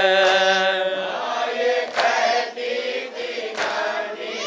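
Men's voices chanting a Shia noha, a mourning lament: a long held note from the lead reciter breaks off about a second in, followed by more chanting with the group. A few sharp slaps cut through, typical of hands beating on chests (matam) in time with the lament.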